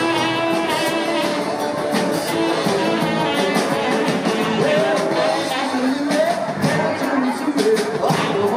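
Live rock band playing vintage British rock on drums, electric guitars, bass and keyboard, with a steady drum beat.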